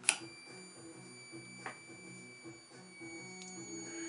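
A switch clicks and a home-built pulsed coil circuit (a back-EMF transformer driving a bulb and charging capacitors) starts up with a steady high-pitched whine carrying several overtones, over a low hum. A small tick comes partway through.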